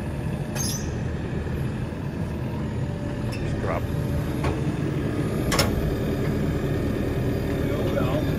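Diesel engine of a Merlo P27.6 Plus compact telehandler running steadily while it lifts a mower conditioner. A few sharp clicks and knocks come over the engine sound.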